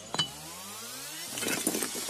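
Sparkle sound effect for a title card: a sharp click, then a rising synthetic sweep lasting about a second, followed by a scatter of glassy clinks and ticks.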